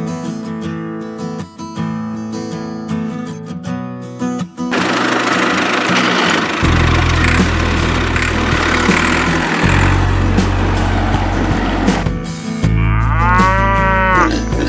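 Acoustic guitar music for the first few seconds, then a tractor engine's low drone that cuts in and out under a loud noisy layer. Near the end a cow moos once.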